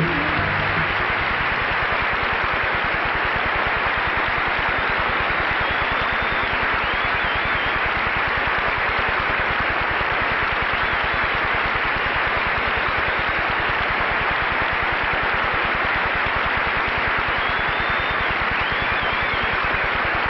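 Studio audience applauding steadily as the band's last note dies away in the first second, with a couple of faint whistles.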